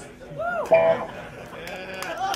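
A person's voice calling out without words: the pitch swoops up and down about half a second in, then holds a short steady note, with no band music playing.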